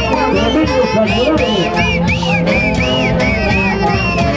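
Andean orquesta típica playing, with saxophones carrying a quick, ornamented melody over a steady accompaniment.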